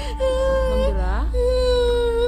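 A woman crying in a high, drawn-out wail, with long held notes and a falling slide about a second in.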